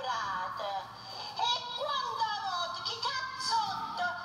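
A woman's voice reciting verse in Italian dialect at a microphone, in a high, sliding, sing-song delivery close to chanting.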